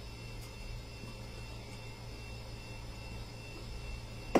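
Steady background hiss with a low electrical hum and a faint thin steady tone, with no distinct events: the room tone of a live-stream microphone.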